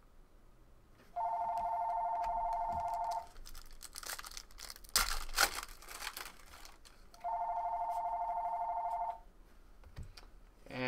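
Telephone ringing twice, an incoming call left unanswered: each ring is a warbling electronic two-tone trill about two seconds long, with a pause of about four seconds between them. Between the rings, the louder crinkle and tear of a foil trading-card pack wrapper being opened.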